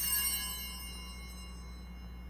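Altar bell struck once, giving a bright, high ringing that fades away over about a second and a half. It is rung at the consecration of the bread, as the host is raised.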